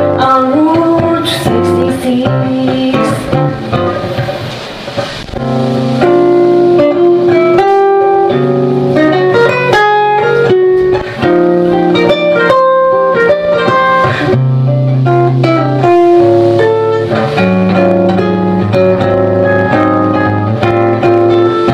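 Guitar solo during an instrumental break: a run of picked single notes and chords with no vocal. It is a little quieter for the first few seconds and fuller from about six seconds in.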